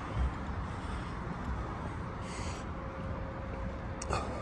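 Uneven low rumble of wind on the microphone with distant town traffic, and a short hiss about two and a half seconds in.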